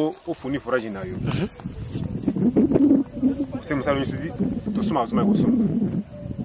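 A man speaking, in words the French recogniser did not catch. A faint, steady, high-pitched insect buzz runs underneath.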